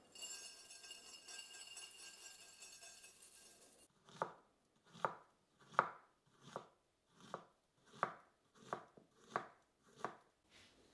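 A knife slicing a banana on a cutting board, about eight even cuts at roughly one every three-quarters of a second, starting about four seconds in. Before the cutting there is a steady hissing noise.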